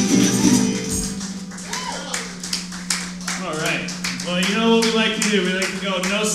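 Live music ending: a resonator guitar's last note rings out over a steady jingling percussion beat, and voices come in about halfway through.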